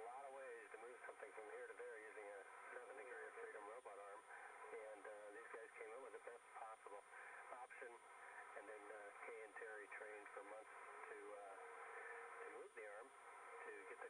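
Speech heard through a narrow, radio-like voice channel, with a thin steady high-pitched tone underneath.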